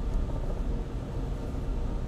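Steady room tone: a low rumbling hum with a faint hiss, with no distinct events.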